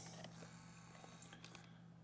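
Near silence: room tone with a faint steady low hum and a few faint ticks.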